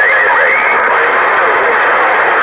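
Uniden President HR2510 transceiver's speaker hissing with received static on CB channel 11, a steady, thin-sounding noise with faint warbling traces of distant, unintelligible voices in it.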